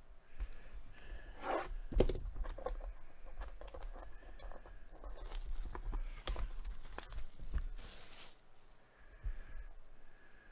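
Plastic shrink wrap being torn and crinkled off a cardboard box, with a few short rips and scattered clicks and knocks as the box is turned in the hands.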